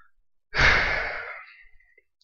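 A man sighs: one long breathy exhale that starts abruptly about half a second in and fades away over about a second.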